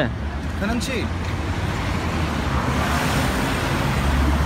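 Road traffic: a vehicle passing close by, its engine and tyre noise swelling over the last two seconds, over a steady low rumble of traffic.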